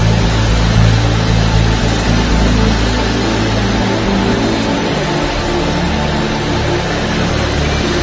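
Soft background music of sustained low keyboard notes that change pitch twice, under a steady wash of many voices praying aloud together.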